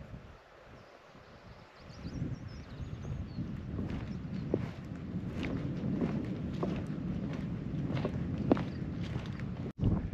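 Wind buffeting the microphone as a low rumble that sets in about two seconds in, with scattered light footsteps on rough grass and stones.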